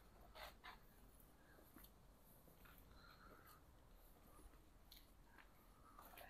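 Near silence: outdoor room tone with a few faint, short clicks and ticks.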